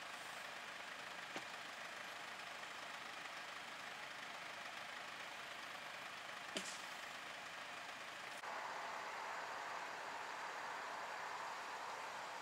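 Faint, steady vehicle engine noise with two short clicks, about a second in and after six seconds; the noise steps up a little and brightens after about eight seconds.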